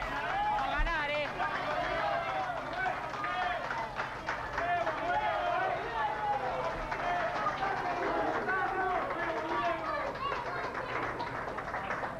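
Men's voices shouting and talking, words unclear, with no other distinct sound.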